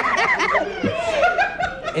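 Laughter from several people at once, dying down after about half a second.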